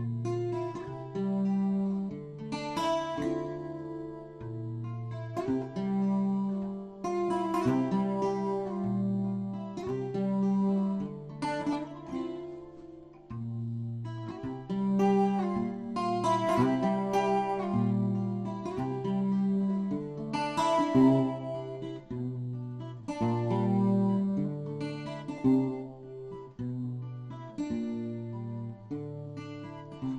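Solo acoustic guitar playing a slow, repeating pattern of plucked chords: the instrumental introduction to a song, before the voice comes in.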